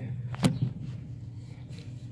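A single sharp tap about half a second in, over a steady low hum.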